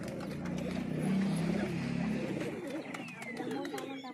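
Several red-tailed fancy pigeons cooing in a loft, their low warbling coos overlapping, with scattered short clicks and rustles of movement.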